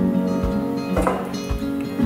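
Background acoustic folk guitar instrumental, plucked and strummed, with a beat about twice a second.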